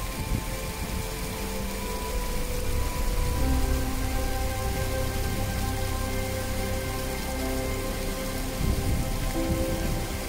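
Steady rushing noise of a tall waterfall pouring onto rocks and a fast rocky stream, with soft background music over it.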